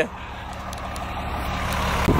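A motor vehicle running, a steady low engine hum with road noise that grows gradually louder.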